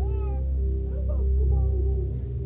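Soft ambient background music with a deep, swelling low tone, and a baby's short, high squeal gliding down at the start, with smaller squeaks about a second in.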